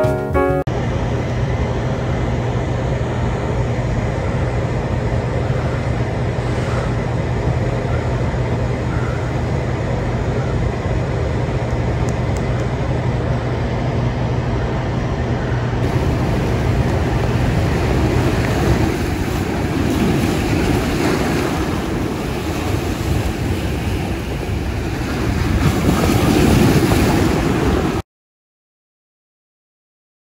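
A steady rushing noise with a low hum under it, growing louder over the last few seconds; a piano tune cuts off right at the start.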